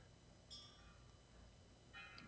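Near silence: faint room tone, with one faint short click about half a second in.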